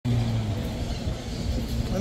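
Busy city-plaza ambience: a steady low hum, loudest in the first half second, under the background voices of passers-by.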